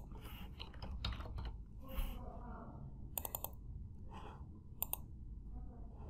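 A few quiet computer clicks, spaced irregularly a second or more apart, some coming in quick pairs.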